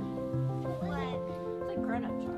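Newborn Nigerian dwarf goat kid bleating: two short, high, wavering cries, one about a second in and one at the end. Steady background music plays throughout.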